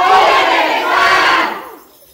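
A group of voices shouting together in one drawn-out cry that fades away about a second and a half in.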